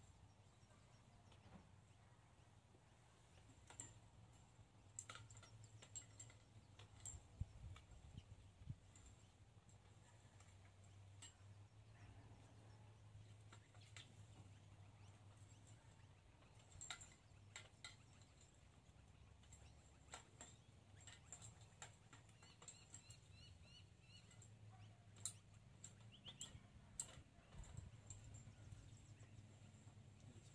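Near silence outdoors: a low steady hum with scattered faint clicks and ticks, and a few brief high chirps about three quarters of the way through.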